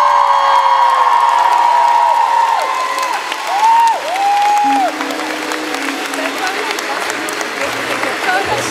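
Concert audience applauding and cheering, with long high whoops held over the first three seconds and two shorter whoops around four seconds in. A low held note sounds under the applause about five seconds in.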